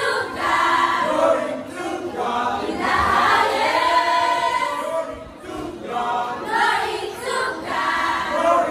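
Choir of girls and young women singing together, with a brief dip between phrases about five seconds in.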